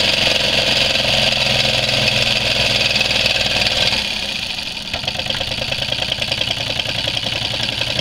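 Miniature four-cylinder solenoid engine running on one cylinder (number three), its solenoid and cam-driven switch making a steady fast mechanical running sound. About four seconds in the sound drops and changes, then slowly grows louder again as the engine keeps running.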